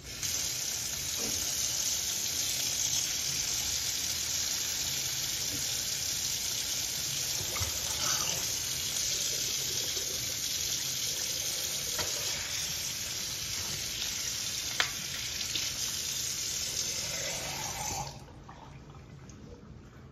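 Kitchen tap running a steady stream into a sink, splashing onto blocks of frozen cola with phones inside, with a few sharp knocks as the blocks are moved. The water shuts off about 18 seconds in.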